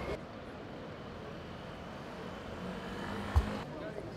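City street ambience: steady traffic noise with a low engine hum, and one sharp thump a little past three seconds in, the loudest sound.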